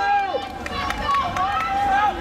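Several spectators' voices shouting and calling out at the same time, with some calls held and drawn out.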